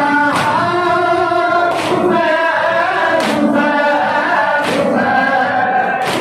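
Two male reciters singing a noha, a Shia lament, in a chanted melody over microphones. A loud unison slap lands about every one and a half seconds, four times, from the congregation beating their chests (matam) in time.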